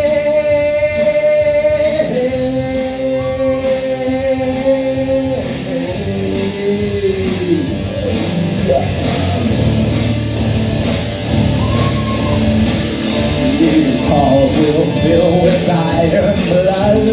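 A rock band playing live: electric guitars and drums, with a melody of long held notes.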